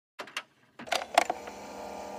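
Channel-intro sound effects: a handful of sharp clicks and pops in the first second or so, then a steady drone of several held tones.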